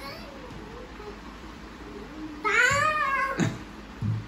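A child's single long, high-pitched wail, rising then falling, about two and a half seconds in, during a play fight.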